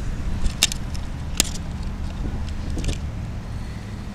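Road traffic on a busy multi-lane street: a steady low rumble of passing cars, with a few short sharp clicks, one at about half a second and another near a second and a half.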